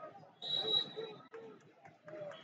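Voices of coaches and spectators calling out across an echoing arena during a wrestling bout, loudest about half a second in, with a short, high, steady tone over them.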